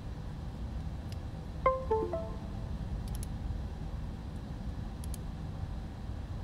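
Windows USB device-removal chime: three quick notes stepping down in pitch, about one and a half seconds in, as the phone is unplugged from the computer. A steady low hum and a few faint clicks run underneath.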